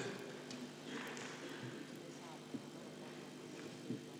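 Quiet room tone in a meeting hall: a steady low electrical hum with faint murmured voices and a few light clicks.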